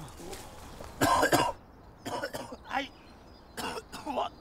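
A man coughing hard: one loud, harsh cough about a second in, followed by several shorter coughs.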